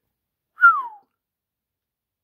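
A single short whistle, falling in pitch, about half a second in.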